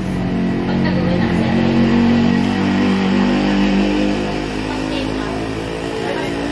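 A motor vehicle engine running steadily close by, swelling slightly about two seconds in and then easing back.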